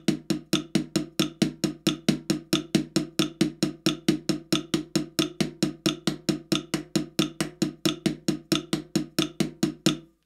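Drumsticks on a practice pad playing a steady triplet sticking, right-left-right, right-left-right, at 90 beats per minute: an even stream of about four and a half strokes a second.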